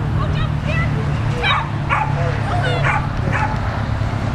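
A small dog yipping and barking in quick, short, high-pitched calls over a steady low hum.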